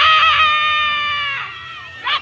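A single high-pitched, drawn-out scream, held for about a second and a half before fading: an excited cheer from the crowd at a cheerleading routine as the squad's stunts go up.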